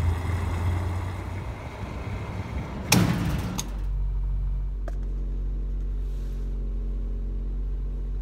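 Fuel being pumped into a car at a gas pump: a steady rushing noise over a low hum, broken by a sharp thump about three seconds in. After the thump comes a car engine idling steadily, heard from inside the cabin.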